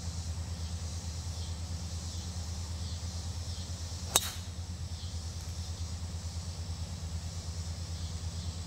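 A driver strikes a golf ball off the tee: one sharp crack about four seconds in, over a steady low hum.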